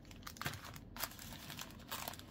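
Faint crinkling of foil trading-card pack wrappers being handled, a few soft crackles spread across the moment.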